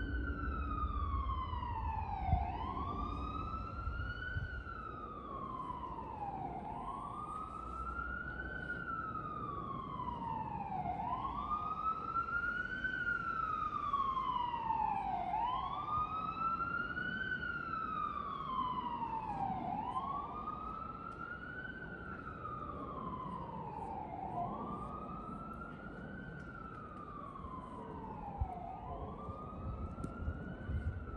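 An emergency vehicle siren in a slow wail: one pitched tone rising and falling again and again, about once every four seconds, continuing without a break. Beneath it runs a low steady rumble.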